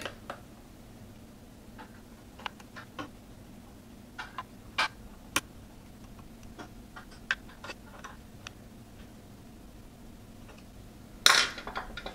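Small Phillips screwdriver loosening the spring-loaded heatsink screws on a graphics card, making faint irregular clicks and ticks of metal on metal. A louder burst of handling noise comes near the end.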